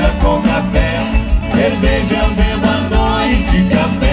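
Live band music played through a PA: singing over piano accordion, guitars and a steady drum beat.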